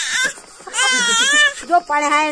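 A baby's high-pitched, wavering squeal lasting under a second, near the middle, from an infant shrieking with excitement while gnawing a cucumber. A short burst of noise comes just before it, and another voice starts near the end.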